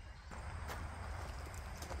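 Faint footsteps, a few soft steps on a garden path, over a low steady rumble on the microphone.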